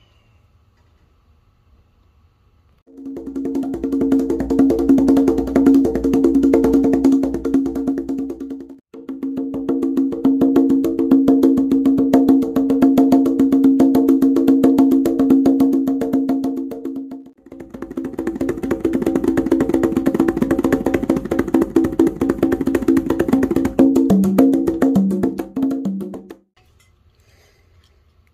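Conga drums played by hand in fast, dense rhythms, starting about three seconds in. There are three long runs with short breaks between them, and the last run ends on a few lower-pitched strokes.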